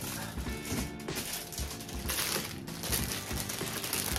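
Background music with a steady beat, with thin plastic crinkling as a clear plastic shoe crease protector is handled and taken from its bag. The sharpest crinkle comes a little past halfway.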